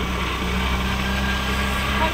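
A motor vehicle engine running steadily with a low, even hum, under a wash of road or wind noise.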